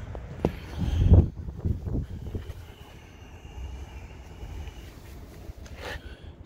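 Driver's door of an SUV being opened, with a few low thumps and handling knocks about a second in, then quieter rustling handling noise.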